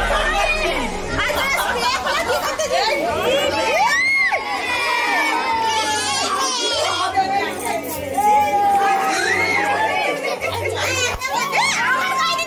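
A group of children shouting and cheering excitedly, many high voices overlapping, with adult voices mixed in.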